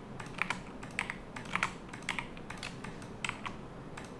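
Computer keyboard keys pressed in short, irregular runs of clicks, a dozen or so, as shortcuts are entered while working in Blender.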